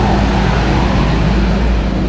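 Flatbed tow truck's engine running as it passes close by: a loud, steady, low-weighted drone.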